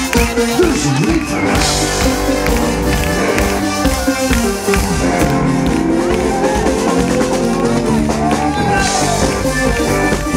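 Live rock band playing loudly through a PA: drum kit, bass and electric guitars. About halfway through, one long note slowly rises in pitch over the band.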